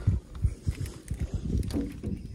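Faint, irregular low thumps and knocks, with a short murmur of a man's voice near the end.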